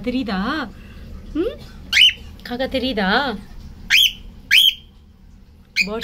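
Cockatiel talking, repeating a short mimicked phrase in a wavering, warbling voice, broken by sharp rising chirp calls about two, four and four and a half seconds in.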